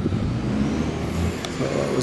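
A motor vehicle engine running: a low, steady hum that swells for about a second and then eases.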